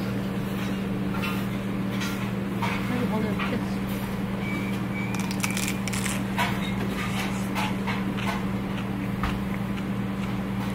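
A steady low hum of the dining room under scattered clicks and crunches, with a bite into a crisp tortilla chip about six seconds in.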